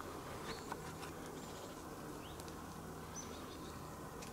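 Faint, quiet field ambience: a steady low hum with a few faint, short, high rising chirps and tiny clicks scattered through it.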